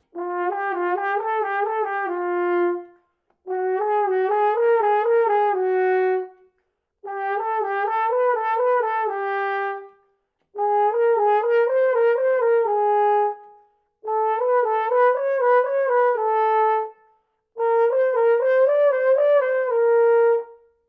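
French horn, played on its B-flat side, playing a slurred lip-flexibility exercise within a third: six short phrases of quick notes stepping up and down, each ending on a held note. Each phrase sits a step higher than the last, with brief pauses between them.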